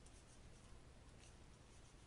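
Near silence: faint scratching of a stylus handwriting on a tablet, over a low steady hum.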